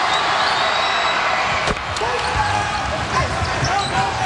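Arena crowd noise, with a basketball bouncing on the hardwood court. There is a sharp knock just under two seconds in.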